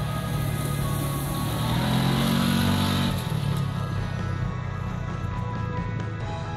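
Background music over the engine of a Kawasaki Teryx 800 side-by-side with a V-twin engine driving along a dirt track. The engine rises in pitch and grows louder about two seconds in, then eases off after about three.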